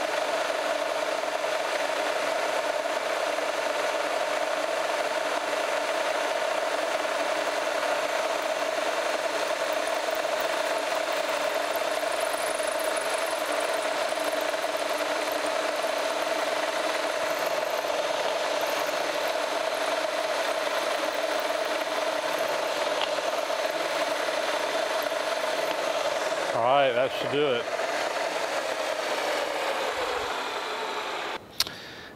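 Radial drill press running at 1425 RPM, a number 25 drill bit boring a deep tap-drill hole into a cast iron casting: a steady hum with a rasping cutting noise. A short wavering pitched sound comes near the end.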